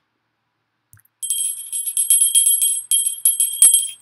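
A small hand bell shaken rapidly, ringing with a high, steady pitch. It starts about a second in, after a near-silent pause.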